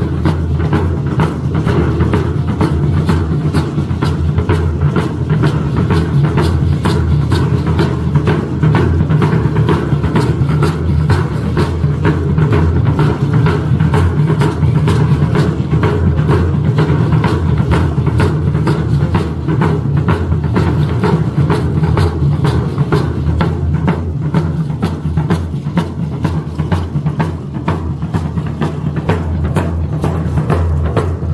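A tamborazo band playing, with a heavy bass drum and percussion beating steadily under the music.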